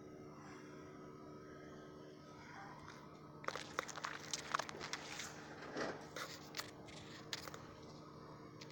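Close rustling and crunching, a run of sharp crackles lasting about four seconds from about halfway in, over a faint steady hum.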